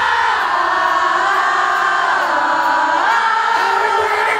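Concert crowd singing along without the band, many voices holding long notes that step to a new pitch about once a second.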